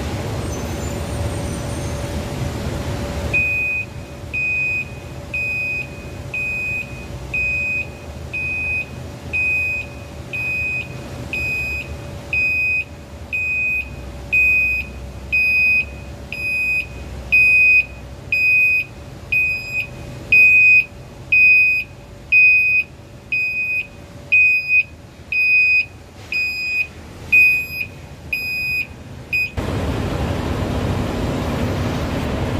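Dump truck's reversing alarm beeping about once a second with a high, even pitch, starting about three seconds in, over the low steady running of its diesel engine as it backs up and tips its load of iron ore.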